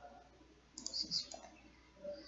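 A few faint, quick clicks a little under a second in, from a computer mouse as the medical-imaging software is operated.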